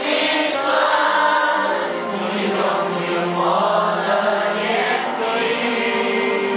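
A large group of men and women singing a Chinese song together, holding long notes.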